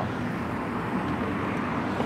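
A vehicle engine running steadily, an even low hum with no change in pitch.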